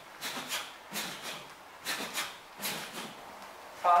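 Wooden eskrima stick swishing through the air in quick repeated strikes, the whooshes coming in rough pairs about every half second to second.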